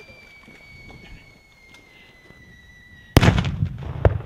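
Artillery simulator going off: a faint whistle that falls slowly in pitch, then a sharp blast about three seconds in, followed by a low rumbling tail.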